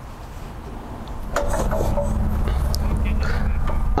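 Wind buffeting the microphone: a low rumble that swells up about a second in and stays loud, with faint voices in the background.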